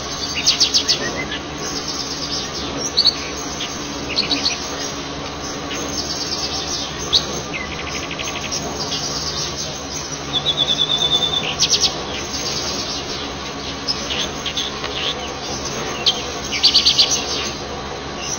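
Wild birds chirping and trilling in short high bursts every second or two, over a steady low hum.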